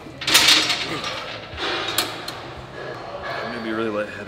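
Hard breaths and a clunk from a pec deck machine's weight stack, with a short voice sound near the end.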